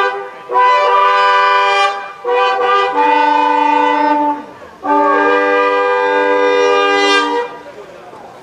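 Several long curved shepherd's horns blown together, sounding held chords in three long phrases with short breaks between them; the last chord stops about seven seconds in.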